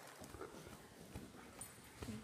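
Faint sounds of a large dog close to the microphone, with a few soft taps.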